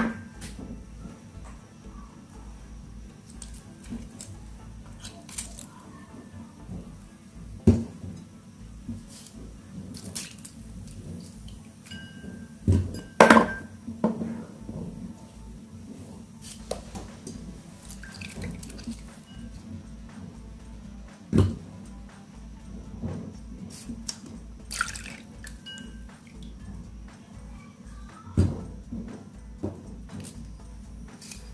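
Calamansi halves squeezed by hand over a small ceramic bowl: juice dripping and squishing, with scattered sharp knocks of the fruit and bowl against a wooden cutting board.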